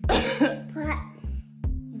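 A short cough-like burst and a few brief vocal sounds over steady background music.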